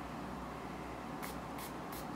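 Perfume pump-spray bottle spritzed three times in quick succession, starting a little over a second in.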